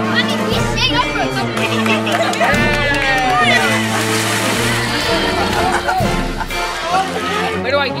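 Background music with steady held bass notes, over children's voices and some water splashing.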